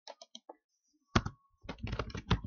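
Typing on a computer keyboard: a few light clicks at first, one sharp keystroke about a second in, then a quick run of keystrokes near the end.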